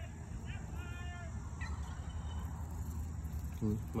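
A man's voice calling out to his dogs in the distance: one drawn-out, level call about a second in. A low steady rumble runs underneath.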